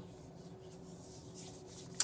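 Soft rubbing of hands over quiet room tone with a faint steady hum, ending in a short click.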